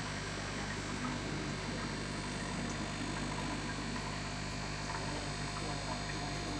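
Steady hum and hiss of aquarium equipment: air pumps driving sponge filters, with air bubbling up their lift tubes. The sound holds even throughout.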